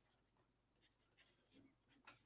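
Near silence, with a few faint short scratches and taps of a stylus writing on a tablet.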